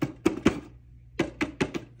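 Magnet-held 3D-printed plastic helmet panels snapping on and off: a string of sharp clicks, three in quick succession at the start and four more about a second in.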